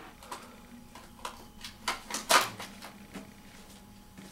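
Irregular light clicks and knocks of small hard objects being handled, about seven in all, the loudest a little past halfway through.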